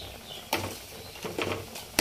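A pot of lentils boiling hard, bubbling and foaming, with a few short sharp pops or clicks.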